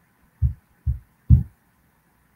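Three short, low, dull thumps, evenly spaced about half a second apart.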